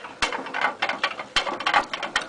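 A hamster running in the yellow plastic exercise wheel of a CritterTrail Two cage, making a quick, irregular clicking rattle that is not quiet at all.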